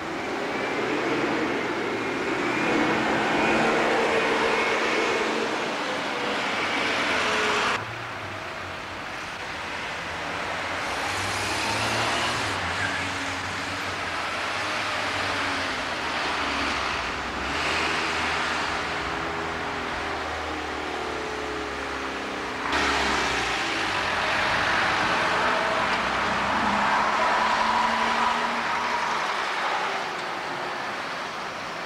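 Diesel buses running in town-centre street traffic, one passing close with its engine note rising and falling as it pulls away. The sound changes abruptly twice where separate clips are joined.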